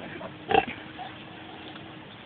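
A pig gives a single short call about half a second in, among a newborn litter of piglets.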